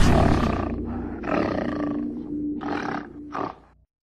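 Logo sting sound effect: a loud boom dies away, then an animal roars in three growling bursts before a sudden cut to silence near the end.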